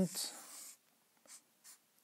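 Marker pen drawing on a whiteboard: one longer scratchy stroke in the first second, then two short quick strokes.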